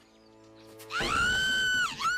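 A high-pitched squealing tone starts about a second in. It slides up, holds steady for almost a second, and falls away at the end.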